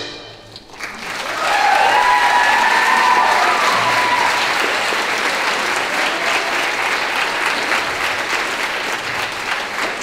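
A jazz band's final chord cuts off, and after a brief hush the audience applauds steadily, with some cheering in the first few seconds.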